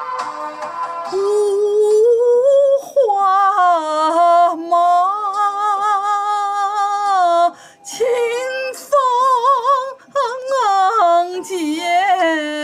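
A solo singer over a backing music track. The voice comes in about a second in and holds long notes with vibrato, with two short pauses near the end.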